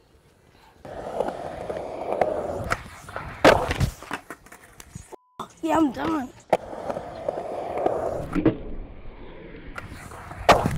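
Skateboard wheels rolling on concrete, ending in a sharp clack as the board hits the ground on a bailed backside heelflip down a stair set; this happens twice, about three seconds in and again near the end. A short shout comes between the two attempts.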